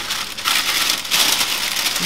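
Baking parchment crinkling and rustling as it is gathered up and scrunched closed by hand into a parcel, with irregular crackles throughout.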